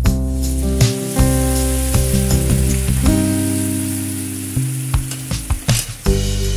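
A soy and oyster sauce mixture sizzling and bubbling hard as it is poured into a hot pan of fried garlic, over background music.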